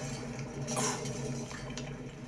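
Quiet room tone: a low steady hum, with a brief soft noise about three quarters of a second in.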